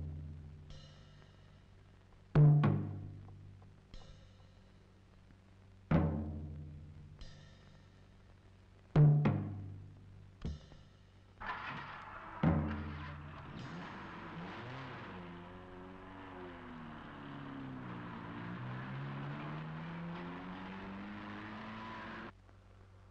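Film-score timpani: four heavy single strokes about three seconds apart, each a low booming note that rings and dies away. In the last third a steadier, noisier sound takes over, its low pitch slowly dipping and rising.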